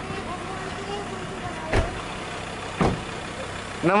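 Car engine idling steadily, heard from inside the car, with two sharp thumps about a second apart.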